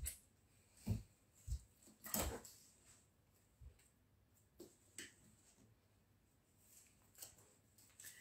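Near quiet, broken by about eight soft, scattered taps and knocks, the clearest a little after two seconds in.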